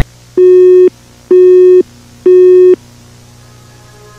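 Three loud electronic beeps at one low pitch, each about half a second long and about a second apart: a broadcast alert tone announcing an emergency message that interrupts the program.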